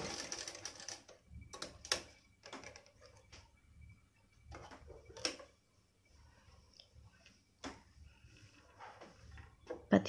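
Cotton nighty fabric being handled and drawn away from a sewing machine: scattered light clicks and soft cloth rustling, without the machine running.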